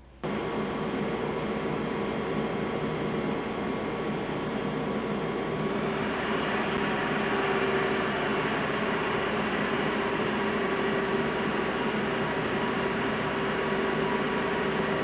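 Metal lathe switched on a moment in, then running steadily with a motor whine. From about halfway a high-speed-steel tool bit cuts the edge of a spinning resin-composite circuit board disc, adding a steady hiss.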